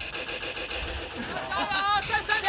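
A low steady background rumble, then a person's voice calling out in the last half-second or so.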